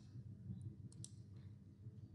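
Faint computer mouse clicks placing points on a drawing: one about half a second in, then two close together about a second in, over a low steady hum.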